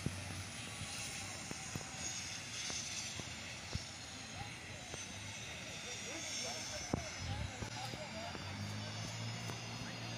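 Helicopter turbine engine running steadily with a faint high whine after a crash landing, with people shouting in the distance.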